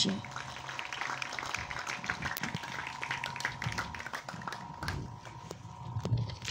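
Audience applauding: dense, scattered hand clapping that thins out near the end.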